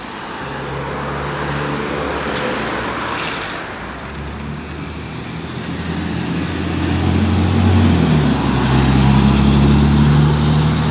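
MAN articulated city bus pulling away from a stop and accelerating. Its engine note grows louder and climbs in pitch, drops back briefly at about eight seconds, then climbs again.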